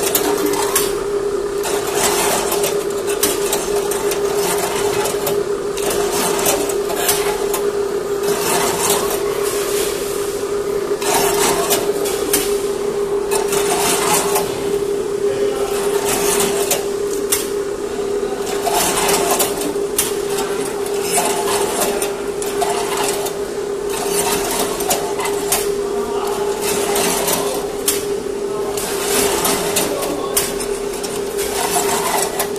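Multihead weigher running on sticky food: a steady machine hum with repeated short clacks and clatter from its stainless weigh-hopper gates opening and closing as they discharge.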